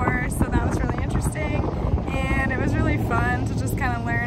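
A woman talking over strong wind buffeting the microphone, a constant low rumble under her voice.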